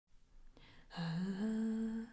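A woman humming unaccompanied, a cappella. A low note starts about a second in, rises in two small steps and is then held.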